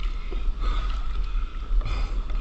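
Whitewater rushing past a stand-up paddleboard as it rides a breaking wave, with wind buffeting the board-mounted camera microphone as a steady low rumble.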